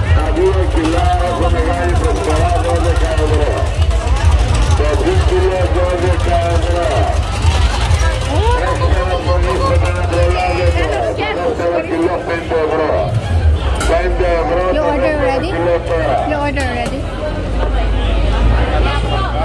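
Voices talking and surrounding crowd chatter, over a steady low rumble.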